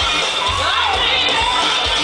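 Live pop-dance song played loud through a concert sound system, with a steady kick-drum beat, and a crowd cheering and shouting over the music.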